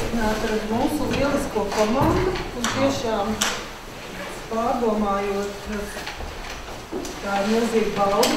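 A woman speaking in Latvian, giving a talk, with a short pause of about a second near the middle.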